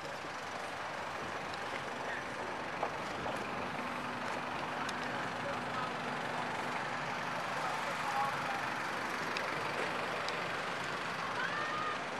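Airport apron ambience: steady engine noise from aircraft and ground vehicles, with faint voices of people nearby.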